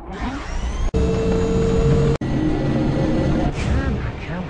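Film soundtrack sound effects: a dense low rumble with a steady held tone, cut off abruptly twice at edits, about one and two seconds in.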